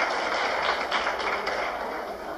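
Audience applauding, re-recorded from a television's speaker; the clapping eases off near the end.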